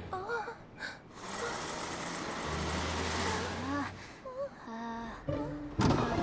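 Animated cartoon soundtrack: a low vehicle engine hum with a hiss, broken by short wordless voice sounds from the characters.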